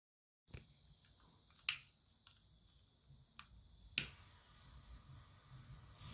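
After half a second of dead silence, a few sharp isolated clicks about a second apart, the loudest near two seconds in, then a faint hiss building near the end as bamboo sparklers catch and start to fizz.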